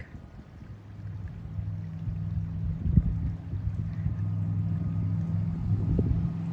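Wind rumbling on the phone's microphone as a breeze picks up, growing louder over the first second or two and then holding steady. A single knock about three seconds in.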